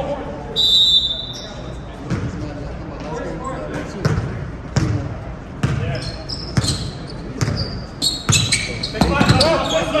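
Basketball dribbled on an indoor gym floor, bouncing about once every 0.8 seconds with echo from the hall. A brief shrill tone comes about a second in, and short sneaker squeaks sound near the end.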